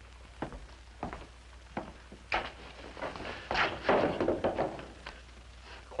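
Footsteps on a hard floor, about one step every two-thirds of a second, then a louder stretch of shuffling and scuffling about three and a half seconds in, over a low steady hum.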